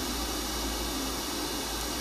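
Steady pink-noise hiss made of two identical signals summed with a small, slowly growing delay between them, so that comb filtering cuts notches into its spectrum.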